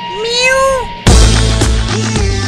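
A domestic cat meows once, a single call that rises and then falls in pitch. About a second in, loud music with a steady beat starts suddenly.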